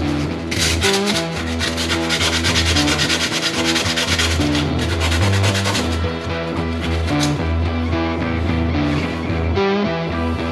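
Sandpaper rubbed by hand in quick strokes over a rusty motorcycle brake disc, scouring off the rust before painting. The sanding is heard from about half a second in to about six seconds in, over background music.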